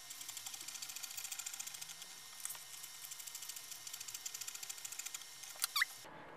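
Scissors cutting along the lines of a paper sewing pattern: a quick, even run of small snipping clicks and paper rustle, with a short pause about a third of the way in and two sharper clicks near the end.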